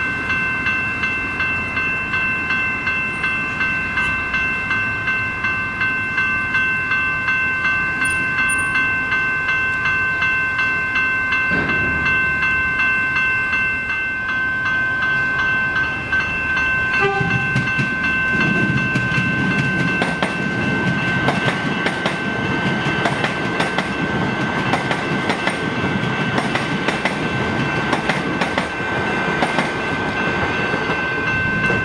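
Railway level crossing bells ringing in a steady, rapidly repeating pulse. Past the halfway mark they are joined by an approaching suburban electric train whose rumble grows, with wheels clacking over the rails.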